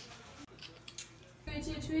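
Faint light clicks, then, about one and a half seconds in, a young woman's high, sing-song voice starts calling "Tweety" to pet guinea pigs.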